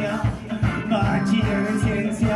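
Live rock band playing: electric guitar, bass and keyboard over a steady, regular drum beat.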